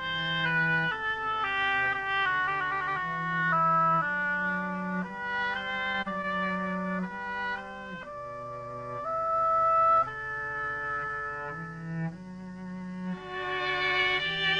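A live chamber ensemble of violin, viola, cello and a woodwind plays the opening movement of a concerto. The upper parts carry the tune in held notes that change step by step, over sustained low cello notes.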